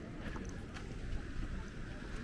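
Wind buffeting the microphone in an uneven low rumble, with a few faint clicks.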